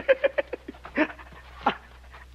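A man laughing in a quick run of short breathy bursts, thinning out into a couple of separate gasps of laughter.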